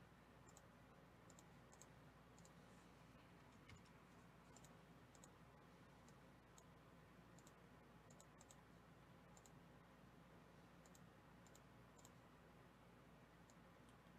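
Near silence with faint, irregular computer mouse clicks.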